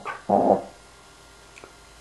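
A dog barking: the end of one bark and a second short bark about a third of a second in, then quiet.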